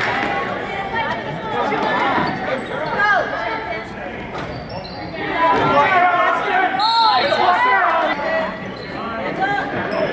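A basketball bouncing on a hardwood gym floor during play, with voices of players and spectators calling out, echoing in a large hall.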